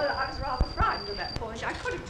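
Speech on an old recording, with a steady high-pitched whine that cuts off about one and a half seconds in and a couple of brief clicks.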